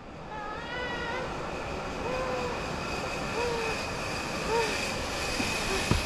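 Zip-line trolley pulley running along the steel cable: a steady rolling hiss with a faint high whine, growing louder as the rider nears. A few short calls sound over it in the first half.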